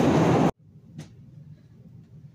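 Loud running noise of a Chicago 'L' elevated train at a station. It cuts off abruptly about half a second in, leaving quiet room tone with one faint click.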